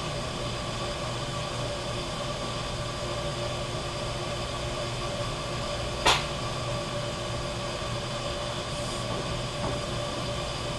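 Steady pump hum with several steady tones as a hand-held coolant wash-down gun sprays liquid over a TRT160 trunnion rotary table, checking it for air leaks. One short, loud burst comes about six seconds in.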